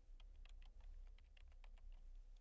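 Faint typing on a computer keyboard: a quick run of light key clicks, several a second, as a search word is typed in.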